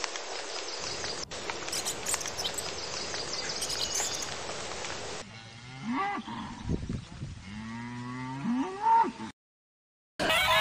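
A steady rain-like hiss with a few faint high chirps. About five seconds in, dairy cows start mooing: first a short moo, then a long drawn-out moo that rises in pitch at its end and cuts off suddenly.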